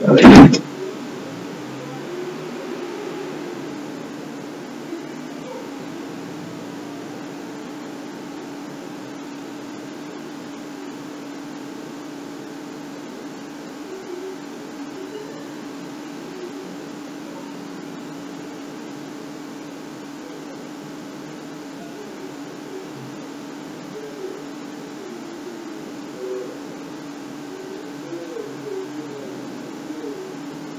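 A single loud, brief burst of noise just after the start, then a steady low hum with faint room noise and a few small ticks.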